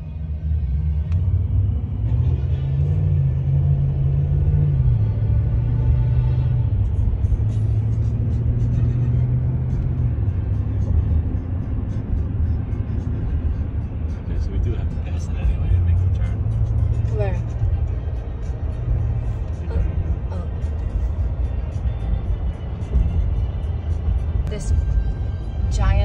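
Pop music on the car's satellite radio, with a prominent bass line, heard inside a moving car's cabin over the low rumble of the road.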